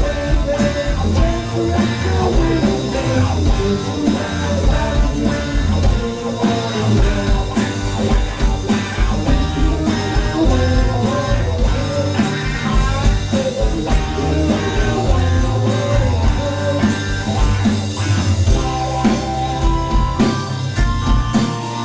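A live power-pop rock band playing: electric and acoustic guitars, bass, keyboards and drums, with singing into the microphones.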